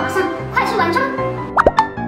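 Background music under a woman's voice, then near the end a quick cluster of cartoon 'plop' sound effects that slide up and down in pitch.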